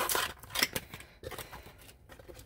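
Sealing tape being removed from a small paperboard product box, a few short scratchy strokes in the first second, then fainter scraping.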